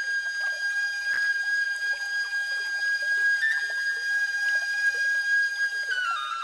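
A flute in Malay senandong music holding one long, steady high note, with a brief waver about three and a half seconds in.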